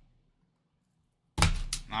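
The last of a blade slitting the seal sticker on a cardboard trading-card box fades out, followed by about a second of dead silence. Near the end a single thunk as the box is handled, and a man's voice begins.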